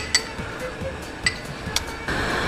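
A long metal ladle clinking against tableware as soup is ladled into a porcelain bowl: three light clinks.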